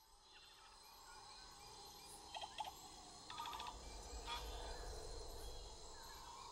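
Faint forest ambience with a low rumble, broken by a few short bird chirps and trills about two, three and a half and four seconds in.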